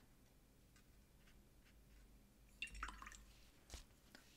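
Near silence, then faint soft handling noises and a small tick in the last second or so as a paper towel is pressed to a watercolour brush to blot it damp.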